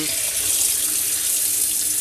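Kitchen tap running in a steady stream onto a plastic salad-spinner basket of wet stockings in a stainless steel sink, with water splashing: hand-rinsing the washing in clear water.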